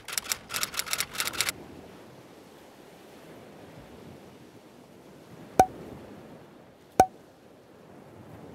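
Keyboard-typing sound effect, a quick run of about a dozen key clicks in the first second and a half, then two single mouse-click sound effects about a second and a half apart. Under them runs a soft, steady wash of ocean waves.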